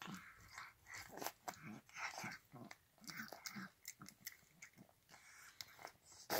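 Elderly cat eating wet cat food from a metal bowl: quiet, quick, irregular wet chewing and smacking clicks, mixed with short snuffly breaths through the nose.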